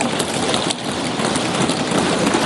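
Members of parliament thumping their desks in applause, a loud, dense patter of many knocks that does not let up.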